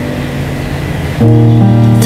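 Electronic keyboard playing a slow, sustained accompaniment: a held chord fades softly, then a new chord with a deep bass note is struck just over a second in and rings on.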